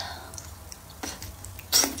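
Close-miked eating sounds: a person sucking and slurping a soft braised eggplant slice in off chopsticks, with a short wet slurp about a second in and a louder one near the end.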